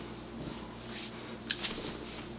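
Quiet room tone with a steady low hum, and one short hissy click about one and a half seconds in.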